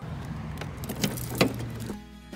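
Car keys on a keyring jangling and clicking at the trunk lock, a few sharp clicks with the loudest near the end, over a steady low background hum.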